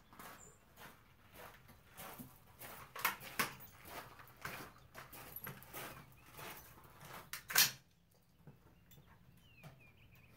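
AR-style rifle being handled on a concrete shooting bench: a string of small clicks and knocks, with one sharper, louder knock about seven and a half seconds in.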